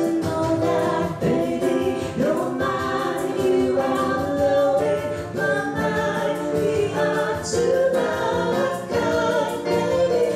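A woman singing into a microphone, accompanied by a digital piano played live.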